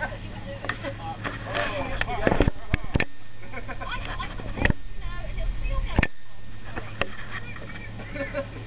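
Indistinct talk of several people, with a handful of sharp knocks over a steady low hum.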